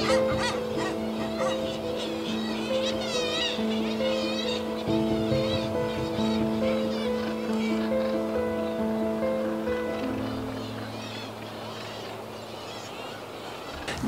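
Background music of slow, sustained chords, with seabird calls over it during the first few seconds; the music fades away near the end.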